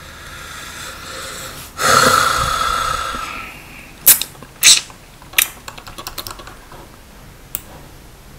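A loud breath blown out close to the microphone about two seconds in, fading over about a second and a half, followed by sharp, spaced clicks of a computer keyboard, three louder ones and several fainter ones.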